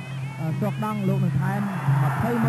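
Broadcast fight audio: a commentator's voice over live traditional Kun Khmer fight music, with crowd noise swelling about one and a half seconds in.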